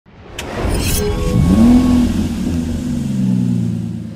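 Intro sound effect of a car engine revving up once and then slowly dying away, with a brief swish near the start.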